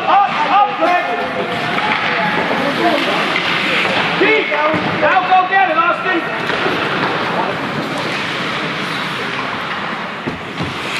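Voices shout "Up! Up! Up!" in a quick repeated chant at the start, with another burst of shouting about halfway through. Underneath is the steady noise of an ice hockey game in play, with knocks of sticks and puck.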